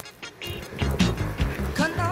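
Background music with a steady beat and bass, dipping briefly just after the start; a wavering melody line comes in near the end.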